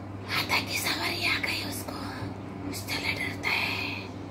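A woman whispering in two breathy stretches of speech, over a steady low hum.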